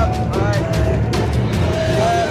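Parade band music, short pitched notes with occasional drum strokes, over a steady low engine rumble.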